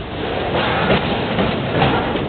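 Double-stack intermodal container cars rolling past, with steady steel-wheel rumble on the rails and two louder clacks from the wheel sets, about a second in and near the end.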